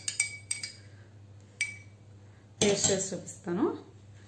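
Spoon clinking against a drinking glass while stirring a drink: a few quick clinks in the first second and one more about a second and a half in, some ringing briefly. A short spoken sound comes twice in the second half.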